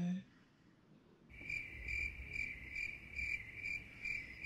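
Crickets chirping: a high pulsing trill at about four chirps a second that starts suddenly about a second in.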